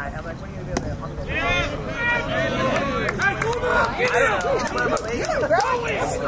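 Several voices at a baseball game shouting and calling out over one another from players and spectators, with a sharp knock a little under a second in.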